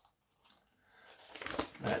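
Near silence, then from about a second in a soft paper rustle as a thin instruction booklet is handled and set down.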